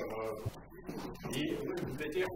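Soft, indistinct talking in a small room, low voices murmuring without clear words.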